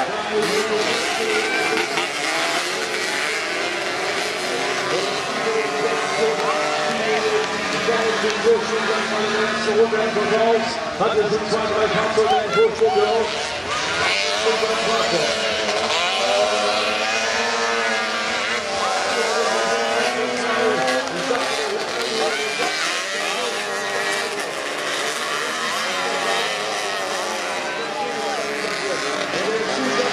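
Several racing buggy engines running hard on a dirt track, their pitch rising and falling as they accelerate and back off through the corners.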